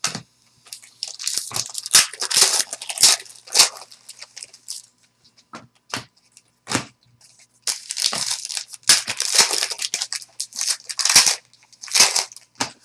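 Plastic trading-card pack wrapper crinkling and tearing as it is handled, in two long stretches of crackle with a few light clicks between them.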